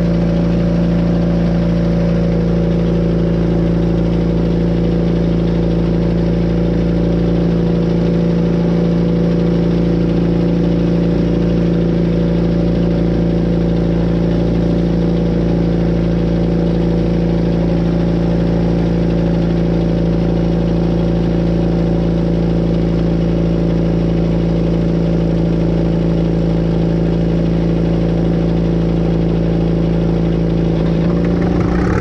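The gasoline pony engine of a 1942 Caterpillar D2 running steadily at a constant speed.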